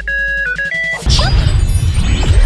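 Intro music with sound effects: a few electronic beeping notes step up and down for about a second, then a sudden loud crash of glitchy noise with sweeping whooshes.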